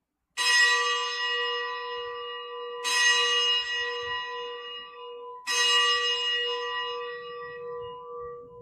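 Consecration bell struck three times at the elevation of the chalice. Each stroke rings on and fades slowly, with a low hum that wavers as it dies away.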